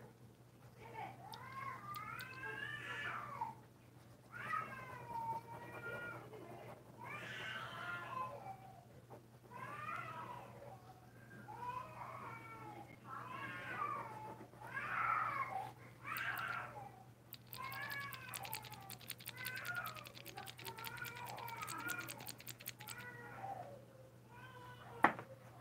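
A cat meowing over and over, about a dozen drawn-out meows a second or two apart, over a steady low electrical hum. For a few seconds in the second half a rapid fine clicking runs underneath.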